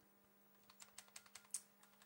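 A quick run of about ten light clicks and taps, starting a little under a second in: hands handling a plastic spring-powered G36C airsoft gun.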